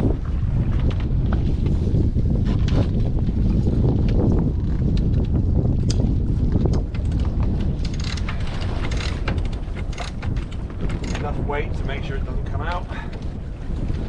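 Wind buffeting the microphone on a sailing yacht's deck, a steady low rumble, with scattered clicks and knocks from the rigging and lines being handled.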